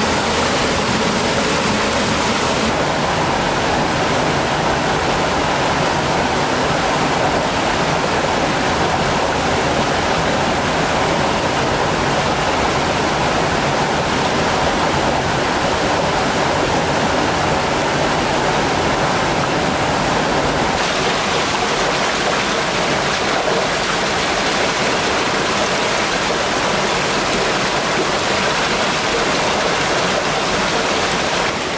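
A small waterfall and rocky mountain stream rushing steadily. The tone of the water shifts slightly about three seconds in and again about twenty seconds in.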